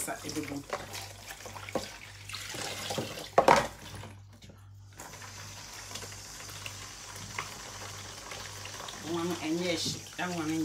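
Water running from a kitchen tap into a sink in a steady hiss, with one sharp knock about three and a half seconds in.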